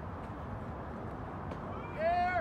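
Steady outdoor background noise at a soccer field, then near the end a loud, high-pitched shout that rises in pitch.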